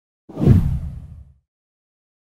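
A single deep whoosh sound effect, a video transition swoosh, that starts suddenly a moment in and fades out within about a second.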